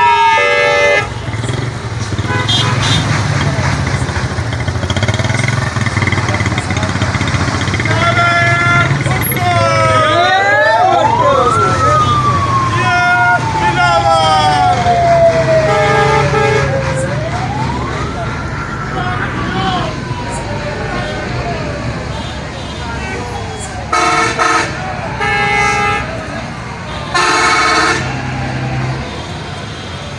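A convoy of buses and cars passing close by with engines running, sounding sirens that glide slowly up and down and fast warbling horns. Several short air-horn blasts come in bursts, a cluster of them near the end.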